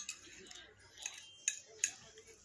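Eating sounds close to the microphone: a few sharp clicks and smacks, about four in two seconds, over a faint background.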